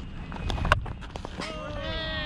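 Cricket bat striking the ball with a sharp crack about three-quarters of a second in, just after a fainter knock, then a long drawn-out shout starting near the end, over low rumble on the camera microphone.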